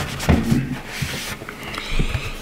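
A white cleaning cloth rubbing along the edges of a MacBook Air's aluminium lower case, wiping out accumulated debris, in uneven strokes.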